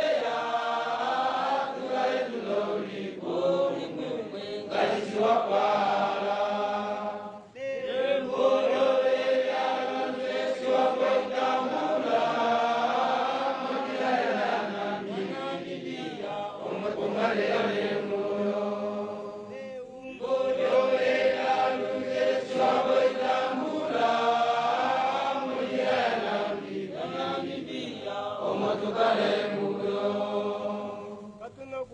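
A large group of voices chanting a song in unison, in long held phrases with short breaks about seven and twenty seconds in.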